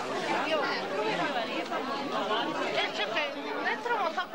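Many people talking over one another: steady market chatter of vendors and shoppers.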